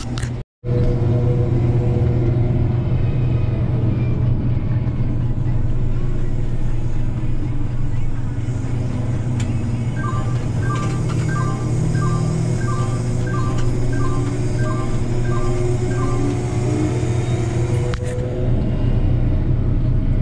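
Combine engine and machinery running steadily, heard inside the cab, with a low drone. Between about ten and sixteen seconds in, an in-cab warning beeps about ten times, roughly one and a half beeps a second.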